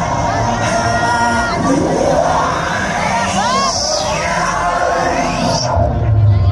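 A festival crowd cheering and whooping over electronic dance music from the stage sound system. A synth riser sweeps steadily upward in pitch for about four seconds. Just before the end the high sweep cuts off and heavy bass comes in as the drop lands.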